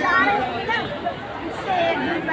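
Several people talking over one another: overlapping chatter of voices, no single speaker standing out.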